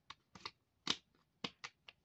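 Small, sharp plastic clicks and taps, about six spaced irregularly, as a plastic toy two-burner stove is handled.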